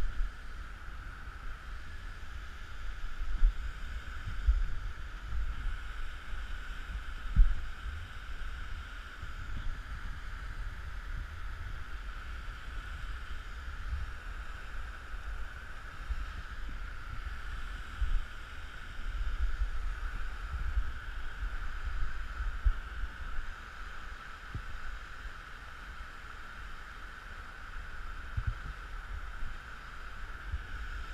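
Steady rush of muddy flash-flood water pouring through a sandstone canyon, with low wind buffeting and a few sharp bumps on the body-worn microphone as the climber rappels.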